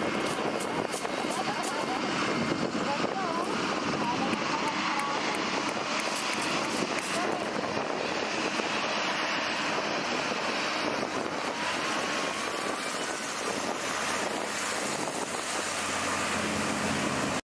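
Passenger hovercraft with twin ducted propellers running steadily as it approaches and comes up onto a shingle beach, its propeller and lift-fan noise mixed with air and spray blasting.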